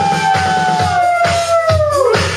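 Live band music with a steady kick-drum beat, about two beats a second. Over the beat a long held note slides slowly down in pitch and fades out near the end.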